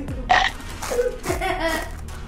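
A burp about a third of a second in, followed by a child laughing.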